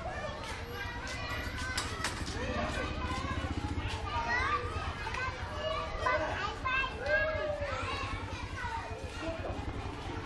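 Many young children's voices chattering, calling and shouting over one another as they play, over a steady low rumble.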